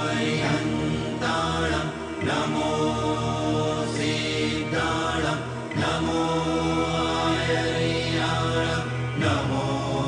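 Chanting set to music: long held sung notes over a steady low drone, the note changing every few seconds.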